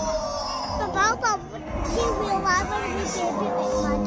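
Children's voices calling out over background show music, with a few short high gliding squeals about a second in.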